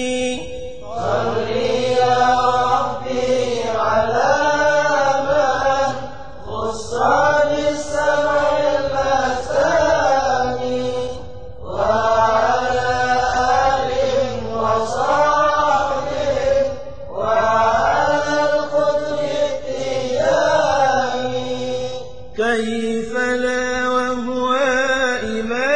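Vocal chanting of an Arabic Sufi devotional poem (qasida), sung in long melodic phrases of several seconds each with short breaks between them. A held note opens and closes the passage.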